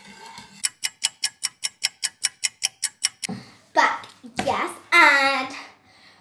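A spoon tapping against a plastic bowl as salt is stirred into water, about five even clicks a second for some two and a half seconds. After that comes a child's voice in short bursts without clear words.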